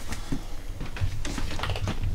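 Filed photographs and card dividers in a desk drawer being flicked through by hand: a run of irregular light clicks and taps.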